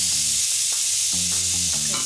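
Chopped onion and sliced leek sizzling in hot olive oil in a pan, a steady high hiss. It is the sound of oil hot enough for a proper sauté.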